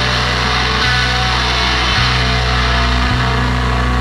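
An improvised avant-garde rock trio of electric guitar, bass and drums playing loudly. Heavy low bass notes are held and restruck about once a second beneath a dense, noisy wall of distorted sound, with no vocals.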